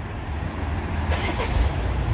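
Road traffic on a city street: a steady low rumble of passing cars, rising slightly about a second in.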